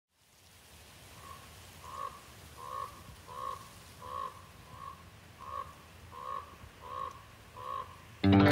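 A crow calling: a steady series of about ten harsh calls, roughly three every two seconds, starting about a second in.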